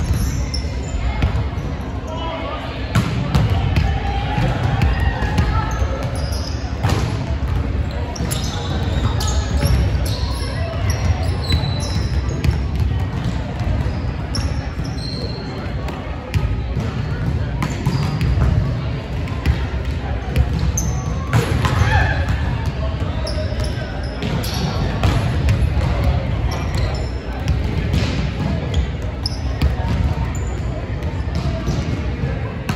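Volleyballs being hit and bouncing on a hardwood gym floor during a hitting drill, a sharp smack every few seconds, with short high squeaks and background chatter from players, all echoing in a large gym.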